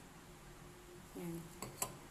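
Faint room tone, then two light clicks close together near the end as a spray can and a plastic cup are handled.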